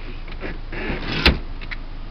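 Brief rustling and a few clicks, the loudest a single sharp click about halfway through, over a steady low hiss.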